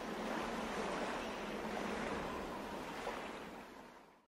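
Sea surf washing over rocks: a steady rush of water that fades out toward the end.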